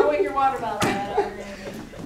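Indistinct voices talking in a room, with one sharp tap a little under a second in.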